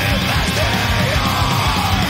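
Death metal recording playing loud and dense, with harsh shouted vocals over the band.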